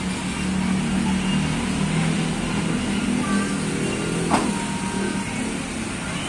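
A motor vehicle engine running steadily at a low hum, with one sharp knock about four and a half seconds in.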